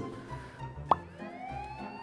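Comic editing sound effects over quiet background music: a quick upward pop about a second in, followed by a rising whistle-like tone that glides up and then holds.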